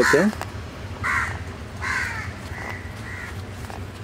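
A bird calling outdoors: four short calls from about a second in to just past three seconds, each roughly half a second to a second apart.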